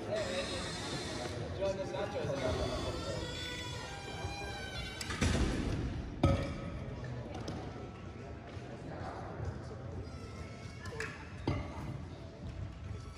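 People talking in a large gym with music playing in the background, and a few sharp knocks, the loudest about six seconds in.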